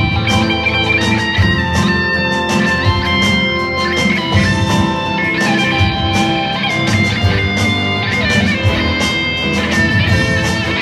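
Live band playing an instrumental break with no singing: strummed acoustic guitar and electric guitar over keyboard piano, upright double bass and drums, in a steady rock groove.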